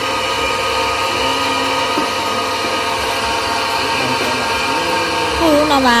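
Electric meat grinder running steadily under load, its motor and auger pushing a thick paste through the plate, giving a constant hum with several steady pitched tones. A voice starts near the end.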